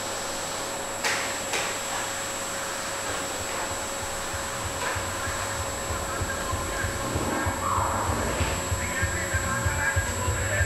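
Canister vacuum cleaner running: a steady motor hum with a high whine, and a couple of knocks about a second in. A low musical beat comes in from about three seconds and grows louder.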